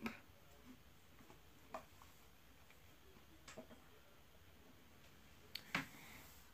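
Near silence: room tone, broken by a few faint single clicks, with two close together near the end.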